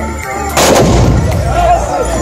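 Volley of long black-powder muskets (moukahla) fired together by a line of charging tbourida horsemen, heard as one loud blast about half a second in with a rolling echo after it. This volley is the fantasia charge's finale.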